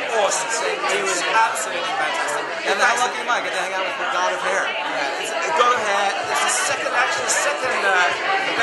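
Chatter of several people talking at once in a crowded room, voices overlapping.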